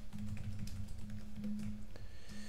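Typing on a computer keyboard, with irregular key clicks over a steady low hum.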